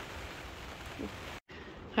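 Steady light rain pattering on the hoop house's plastic cover, heard from inside as an even hiss. It drops out for a moment just past halfway, at an edit.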